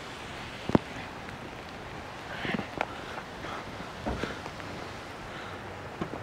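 Steady outdoor noise of wind and rain around a handheld camera, with one sharp click or knock about a second in and a few softer knocks and scuffs of footsteps and handling later.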